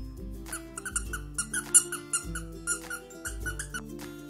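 Squeaky plush carrot toy squeaking about a dozen times in quick, irregular bursts as a puppy chews it, over background music.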